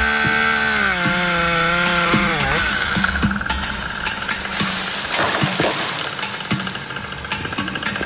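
Two-stroke chainsaw running at full throttle while cutting a branch. Its revs fall off about two and a half seconds in, and a noisy stretch with scattered knocks follows.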